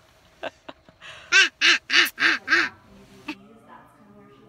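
A woman laughing: a quick run of five loud "ha" bursts, each rising and falling in pitch.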